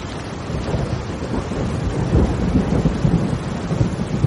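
Heavy rain pouring and splashing, with a deep rumble of thunder underneath that swells about two seconds in.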